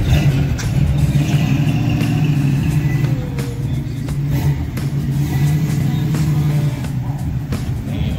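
A parked classic muscle car's engine idling with a loud, steady, deep rumble, with music playing underneath.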